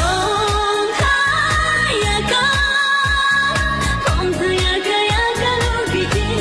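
A modern Tibetan pop song playing as the dance soundtrack: a singer holds long, wavering notes over a steady drum beat.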